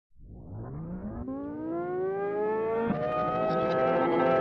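Music intro: a single synthesized tone fades in from silence and glides steadily upward in pitch, levelling off near the end.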